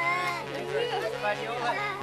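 Several children talking and calling out over each other in a lively jumble of young voices.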